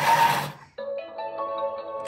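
Thermomix motor whirring as its blade chops onions, cutting off about half a second in. Background music with sustained notes follows.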